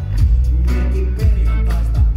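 Live rap-rock band playing loudly: a heavy bass and drum beat with electric guitar, and the vocalist's voice rapping over it, recorded on a phone in the hall.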